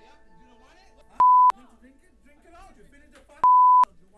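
Two censorship bleeps, each a pure steady tone about a third of a second long, one a little over a second in and one near the end, masking swear words in faint speech.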